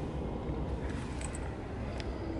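Steady low rumble of a pickup truck heard from inside its cab.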